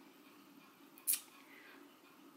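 Quiet room tone broken by a single short, sharp click about a second in.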